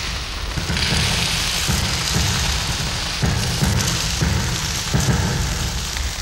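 Battle sound effects for a First World War scene: a dense crackling hiss over a steady low rumble, broken by irregular heavier thuds.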